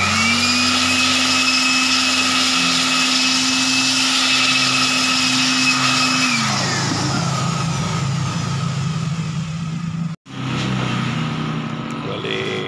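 Handheld electric hot-air blower running at a steady high whine as it blows onto the wet screen-printing screen to dry it; about six seconds in it is switched off and its whine falls away as the motor spins down.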